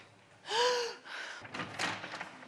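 A heavy door swinging with a short creak that rises and falls in pitch, then a couple of knocks as it shuts.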